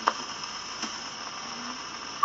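Needle of a 1937 Columbia Viva-Tonal 204 portable wind-up gramophone running in the lead-in groove of a shellac 78 record: steady surface hiss with a few crackling clicks, the sharpest just after the start.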